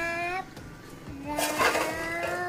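Chalk scraping across a small chalkboard in one short stroke about a second and a half in, as a child writes a letter. Long, steady pitched notes sound around it.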